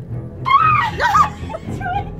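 A woman's high-pitched squeals of fright, a wavering cry about half a second in and a shorter one near the end, over background music.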